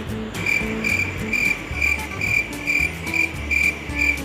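Cricket chirping in a steady, regular rhythm, about two and a half short high chirps a second, over quiet background music.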